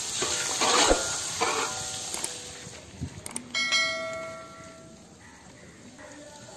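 Cashews sizzling in hot frying oil while a metal mesh strainer scrapes and clatters in the pan during the first two seconds. About three and a half seconds in there are a couple of sharp clicks, then a bell-like chime that rings for about a second and a half from a subscribe-button sound effect.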